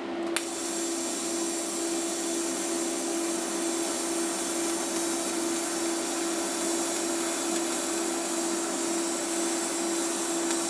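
TIG welding arc on stainless steel: it strikes with a sharp click less than a second in, then burns with a steady high hiss. Under it runs a constant low hum.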